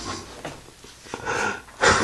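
A person breathing close to the microphone: a soft, hissy exhale about halfway through, then a sharp breath just before the end.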